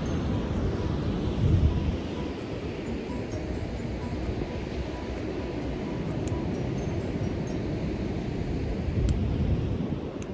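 Wind buffeting the microphone as a low rumble, with stronger gusts about a second and a half in and again near the end.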